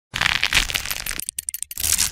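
Crackling sound effect of an animated logo intro: a dense crackle for about a second, then a few separate clicks, then a rising rush of noise near the end.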